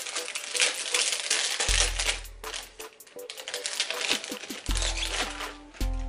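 Rapid rustling and small clicks of a packet of earrings being handled and opened. Background music with a deep bass note that comes back every few seconds plays underneath.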